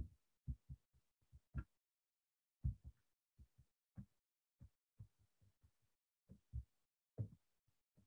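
Faint, irregular soft taps and thumps of a stylus on a pen tablet during handwriting, about twenty short strokes, otherwise near silence.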